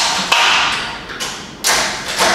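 Pilates reformer parts being adjusted: three sharp metal clunks, each ringing out for most of a second.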